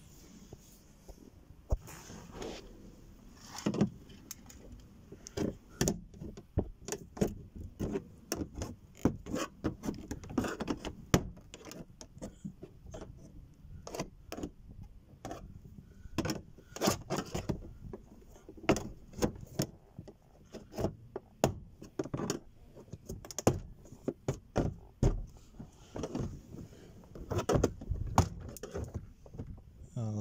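The door card of a 2008 Nissan Qashqai is being pried away from the door with a forked plastic trim-clip removal tool while its plastic retaining clips are worked loose. Irregular sharp clicks, knocks and rattles of tool, panel and clips keep coming, some louder than others.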